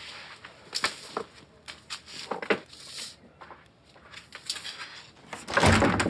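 A front door being opened and shut, with a few light clicks of the latch and handling, and the louder sound of the door closing near the end.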